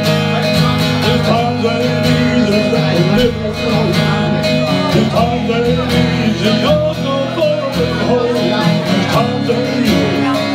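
Live acoustic guitar strummed steadily under a wavering lead melody line, an instrumental stretch of a song with no lyrics sung.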